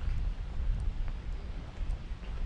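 Wind buffeting the microphone as a low, uneven rumble, with a few faint footsteps on the path.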